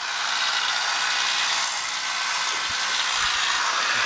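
Steady hissing noise from nearby building work.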